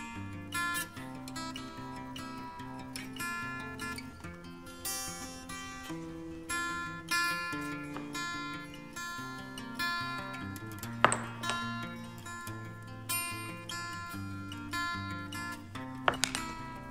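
Solo acoustic guitar background music, plucked notes ringing on. One sharp click stands out about two-thirds of the way through.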